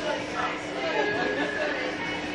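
Several people talking and chattering at once, over a steady faint hum.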